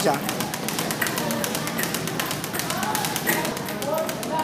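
Speed bag being punched in a fast, even rhythm, a steady run of sharp knocks as the bag rebounds off its overhead platform.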